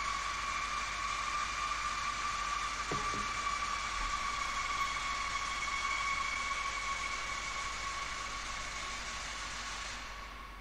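Steady static hiss with a high, steady tone running through it, fading out slowly over the last few seconds.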